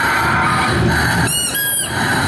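Stage soundtrack music breaks off, and two short, high squeaks follow, the second a little longer than the first: a comic sound effect played over the hall speakers between two pieces of music.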